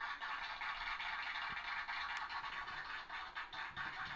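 A steady scratching, rubbing noise made of many fine ticks, with no speech over it.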